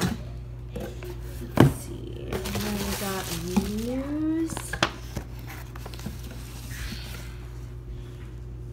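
Cardboard box and its packing being handled, with a sharp knock about one and a half seconds in. A wordless voice rises in pitch in the middle.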